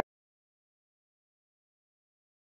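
Silence: a blank gap in the edited soundtrack, cutting off abruptly at the start.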